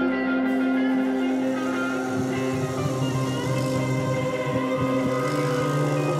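Live rock band playing the song's opening, with long held chords; low rhythmic notes come in about two seconds in.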